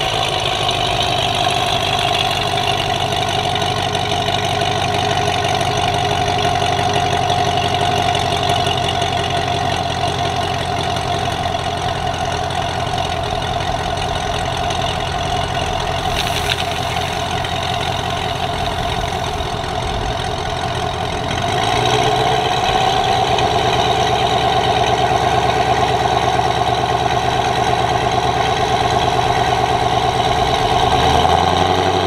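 Supercharged 6.2-litre LSA V8 of a Chevy SS idling steadily, growing a little louder about two-thirds of the way through.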